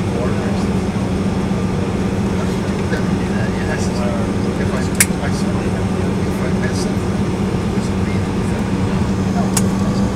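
Steady cabin noise inside an Embraer E-170 taxiing on the ground: the General Electric CF34 turbofans and the air-conditioning make a constant hum and rumble. A sharp click sounds about halfway through, with a fainter one near the end.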